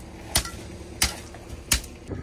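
Steel hand tamper striking a bed of #57 crushed stone, three sharp impacts about 0.7 s apart, compacting the gravel base in thin layers.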